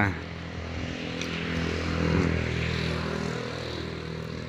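A motor vehicle's engine with a steady low hum, under a broad rushing noise that swells toward the middle and then fades.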